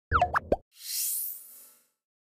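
End-card stinger sound effects: a quick cluster of short popping blips that slide in pitch, then a high hissing swish that swells and fades away.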